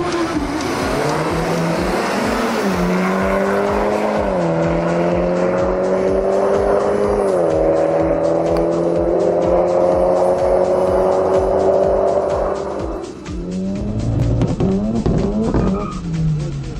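Two cars accelerating hard down a drag strip, their engine note climbing steadily through the gears and dropping at each of three upshifts. About thirteen seconds in the run's sound breaks off and another engine is heard revving.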